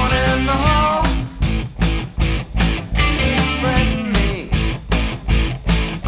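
Recorded rock band playing an instrumental passage: a steady drum beat and bass under an electric guitar playing notes that bend up and down.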